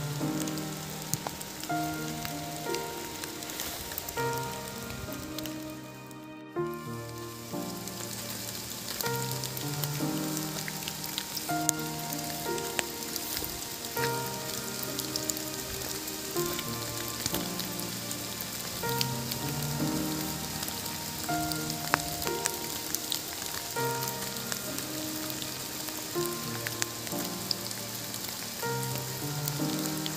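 Steady rain hiss with scattered sharp drip ticks, under background music of slow held notes. Both cut out briefly about six seconds in.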